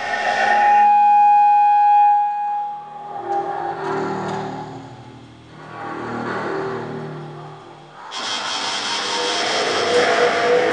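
Amplified bowed metal: a bow drawn across a radiator and along wires strung across a wall. A held high tone comes first, then lower swelling drones that rise and fall, and about eight seconds in a sudden loud wash of harsh noise.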